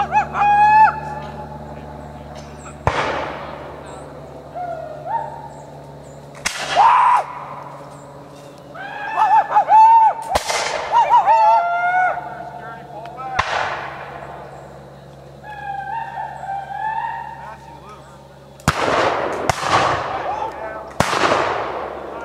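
Scattered black-powder musket shots, about six sharp reports spread a few seconds apart, each with a trailing echo, and men shouting between them.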